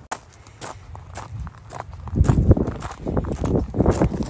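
Footsteps crunching on a gravel trail: light, separate steps about twice a second at first, then loud, close crunching from about halfway through.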